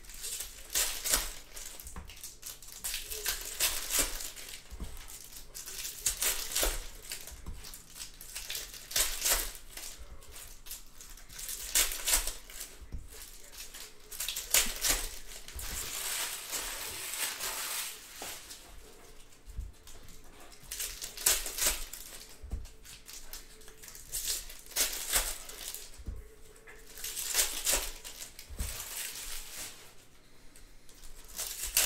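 Foil baseball-card pack wrappers crinkling and crunching in repeated spells as they are torn open and handled, with cards sliding against one another.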